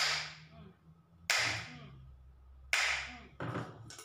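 Hammer striking the neck of a glass wine bottle three times, about a second and a half apart, to crack the neck off. Each blow is a sharp hit that rings off briefly.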